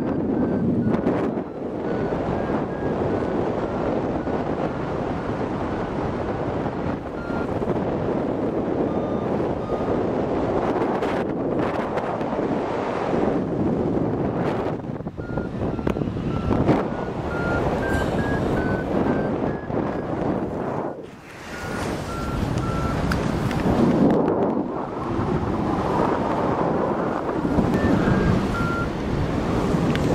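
Wind rushing over the microphone during a paraglider flight, dipping briefly about two-thirds of the way in. Through it a flight variometer beeps in short tones whose pitch steps up and down, the signal that the glider is climbing in lift.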